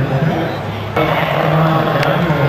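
Indistinct, unworded speech with crowd noise over a steady low hum; the sound steps up in loudness about a second in.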